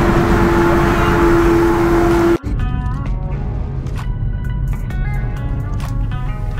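Road noise inside a moving car with a steady hum, cut off abruptly about two and a half seconds in. Quieter background music of short, separate pitched notes follows.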